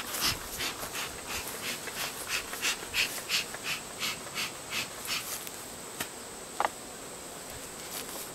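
Bee smoker bellows being pumped in quick short puffs, about three a second, each a brief hiss of air, stopping after about five seconds. A click and a short squeak follow a little later.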